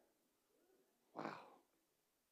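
Near silence: room tone, with one short, faint breath about a second in.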